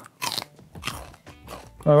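A bite into a raw celery stick: one loud, crisp crunch just after the start, followed by fainter crunching as it is chewed.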